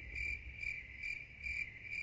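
A steady high-pitched trill that pulses about four times a second, faint, over a low rumble.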